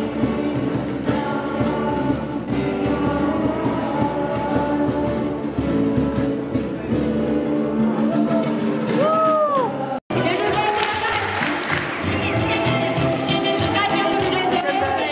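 Live band music with a steady beat and a group singing along to an upbeat song. A couple of short swooping cries come just before the sound cuts out abruptly about ten seconds in. It then returns with the crowd of singers louder.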